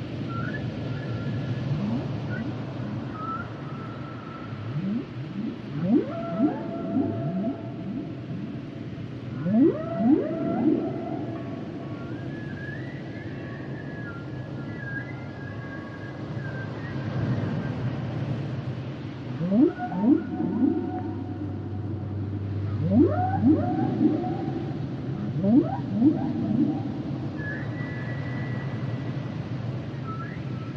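Humpback whale song: clusters of rising whoops sweeping up from low to mid pitch, with higher held and gliding tones between them, over steady background noise.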